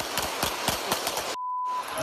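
A rapid string of police handgun shots, several a second, heard through a bystander's phone recording. About a second and a half in the sound cuts out and a short, steady high censor bleep plays.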